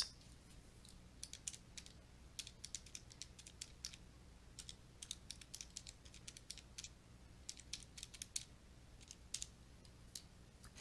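Faint, irregular clicking of keys being pressed in small clusters with short pauses, as a division is keyed into a calculator.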